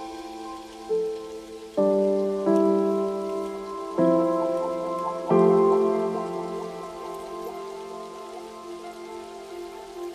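Lofi hip hop music: mellow keyboard chords struck about five times in the first half, each ringing out and slowly fading, over a steady rain-like hiss, with no drums.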